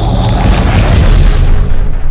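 Cinematic logo-reveal sound effect: a loud, deep boom and rumble with a rushing hiss over it, loudest in the second half.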